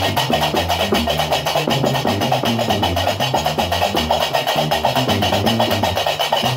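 Gnawa music: a guembri, the three-string bass lute, plucked in a repeating low bass line over the fast, steady clatter of qraqeb iron castanets.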